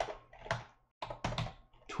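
Typing on a computer keyboard: a couple of separate keystrokes in the first half second, then a quicker run of key clicks in the second half.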